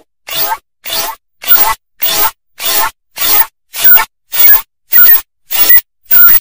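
A short, heavily distorted sound snippet repeated as a stutter loop: about two harsh, noisy bursts a second, each cut off sharply with a silent gap between.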